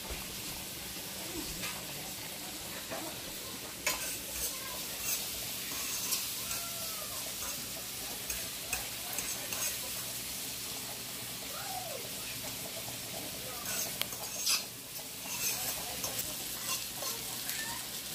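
Chopped onions frying in butter in an electric skillet, a steady sizzle, while a metal spoon stirs them and clicks and scrapes against the pan from about four seconds in.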